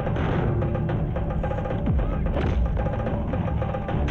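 Action-film background score driven by heavy drums and percussion, loud and steady, with rapid beats.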